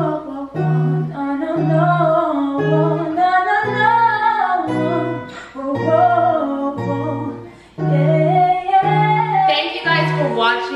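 Background song: acoustic guitar plucking evenly repeated low notes under a sung melody.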